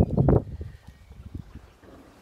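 A short, loud rush of breathy noise on the microphone in the first half-second, then quiet outdoor background with a few faint soft knocks.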